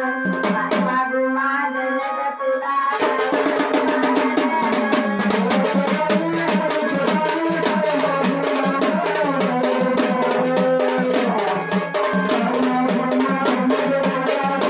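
Live Marathi gondhal folk music. Drums come in with a fast, even beat about three seconds in, under a held melody.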